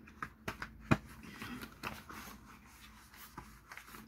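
A small cardboard box being handled as a mould is pushed back into it: a few light clicks and taps, one sharper knock about a second in, then faint rustling.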